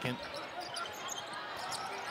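A basketball being dribbled on a hardwood court, over a steady arena crowd hubbub.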